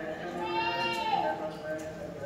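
Male voices chanting in long held notes, a steady low drone under a melody line that rises and bends about a second in: Orthodox church chant.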